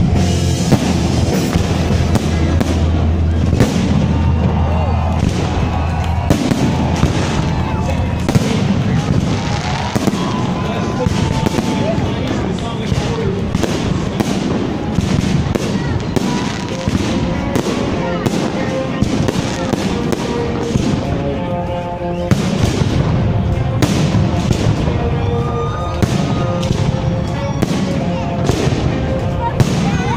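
Fireworks salute: many bursts and bangs in rapid, continuous succession over a steady low rumble, with crowd voices and music mixed in.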